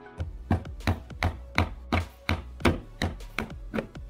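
Claw hammer striking the wooden soffit boards of a house eave in a steady run of sharp blows, about three a second, with faint music underneath.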